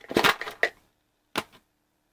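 Handling noise from a hand adjusting the camera: a quick run of knocks and rubbing in the first half-second or so, then one sharp click about a second and a half in.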